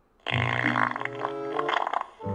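A comic fart sound effect, one long low fart of about a second and a half, starting suddenly after a brief silence and laid over background music, marking the baby filling his diaper.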